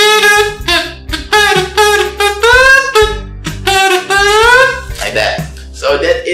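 Comb-and-plastic-bag kazoo, the plastic buzzing against the lips, played with the comb at the side of the mouth, the placement said to give a focused sound. It gives a loud, buzzy, saxophone-like tone in a short melodic phrase whose notes rise and fall, and stops about five seconds in.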